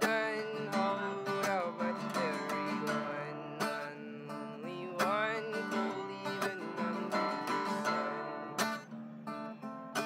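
Solo steel-string acoustic guitar strummed in a steady rhythm, with a man singing over it.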